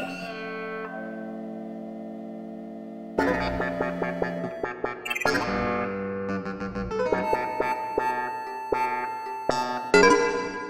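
Contemporary instrumental music: sustained notes fade out over the first three seconds, then a fresh attack about three seconds in starts a busy stretch of short plucked or struck notes over held tones.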